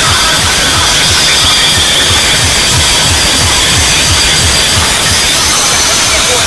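Very loud, heavily distorted DJ sound-system music with a rapid bass beat, overloading the phone's microphone. Two DJ rigs are blasting against each other in a sound competition, their music clashing.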